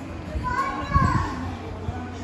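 A child's high-pitched voice calling out briefly, rising and falling in pitch, about half a second to a second and a half in, over dining-hall room noise and a steady low hum.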